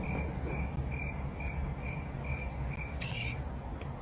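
A cricket chirping steadily, about three short chirps a second, over a low hum, with one brief hiss about three seconds in.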